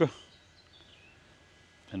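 Near-silent outdoor background between a man's speech, with a few faint bird chirps about half a second to a second in.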